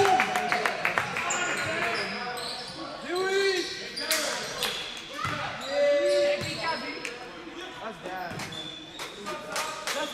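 Echoing gymnasium sounds during a basketball game: a basketball bouncing on the hardwood court, with shouting voices from players and spectators now and then.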